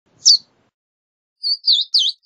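Verdin calling: one sharp, high, descending chip, then a quick run of three chips near the end.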